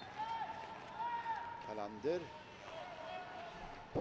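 Mostly a man's voice commentating in Swedish, with short pauses, over faint arena background noise.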